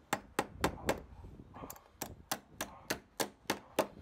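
Claw hammer driving nails through a metal bracket into a wooden foundation beam: quick, even strikes about four a second, with a short pause about a second in.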